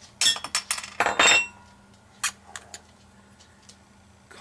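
Crown cap being prised off a glass beer bottle with an opener: a run of metallic clicks and scrapes, loudest about a second in, then a single clink a little after two seconds.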